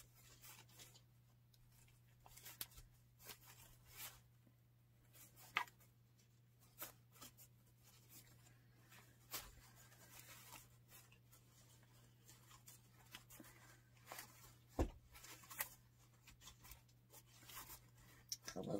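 Wired fabric ribbon rustling and crinkling in scattered short bursts as bow loops are twisted and fluffed by hand, over a faint steady low hum.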